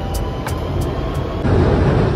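London Underground train running, its ride noise filling the carriage and getting louder and fuller about a second and a half in. Background music with a light ticking beat plays under the first part.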